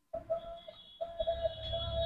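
A marker writing on a whiteboard, heard as faint, irregular strokes over a steady high background whine.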